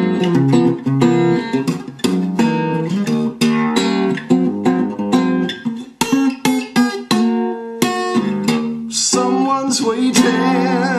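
Acoustic guitar music: an instrumental passage of many quickly picked and strummed notes.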